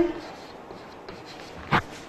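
Chalk writing on a blackboard: faint scratching strokes, with one short, louder chalk stroke near the end.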